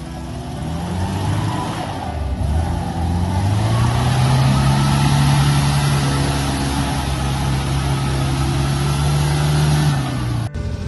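Steyr-Puch Pinzgauer engine revving up about three seconds in, then held high and steady as the truck pulls through deep mud, with a steady hiss over it.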